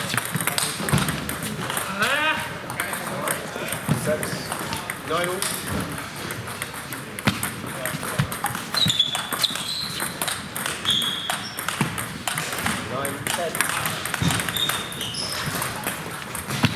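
Table tennis ball clicking off the bats and table in a rally, among the clicks of rallies at other tables in an echoing sports hall, with voices in the background.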